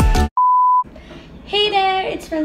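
Music cuts off, and a single electronic beep follows: one steady, pure, mid-pitched tone lasting about half a second. A girl's voice starts speaking near the end.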